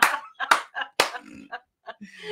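Three sharp hand slaps about half a second apart, with bursts of laughter between them.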